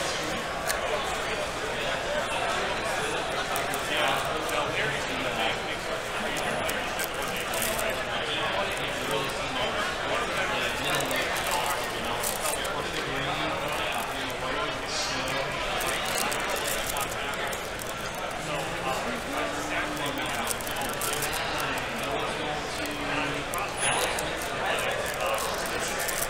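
Steady babble of many voices in a crowded convention hall, with scattered crinkles and clicks of foil trading-card pack wrappers being torn open and handled close by.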